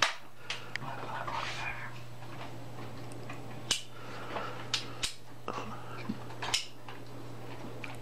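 Scattered light clicks and taps of a small metal part being handled and worked by hand, over a steady low hum.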